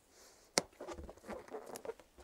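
A rubber balloon being blown up by mouth and handled close to a lapel microphone: a sharp click about half a second in, then a run of small irregular squeaks and crackles of stretching rubber.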